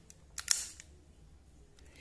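Ignition key being turned in an electric scooter's handlebar key switch to switch it on: two quick mechanical clicks close together about half a second in, the second sharper and louder.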